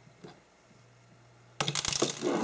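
Shotgun shell being cut open with a metal box cutter: a faint click about a quarter second in, then a sudden metallic clatter about one and a half seconds in as the box cutter is put down on the table.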